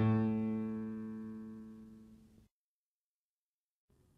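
A single low instrumental note, rich in overtones, struck once and left to ring, fading steadily for about two and a half seconds and then cut off abruptly into dead silence. A faint sound returns just before the end.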